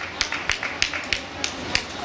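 Hand clapping, sharp single claps at about three a second, over a murmur of voices.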